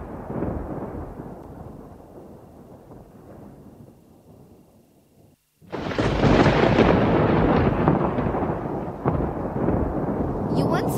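Thunder sound effect: a rumble fading away over the first few seconds, then a loud new thunderclap and rumble that starts suddenly about halfway through and keeps going.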